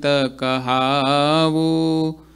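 A man chanting a devotional verse in a sung, melodic voice: a short phrase, a brief breath, then one long drawn-out line.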